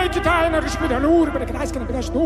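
Music: a voice singing in long notes of wavering pitch over a steady low drone.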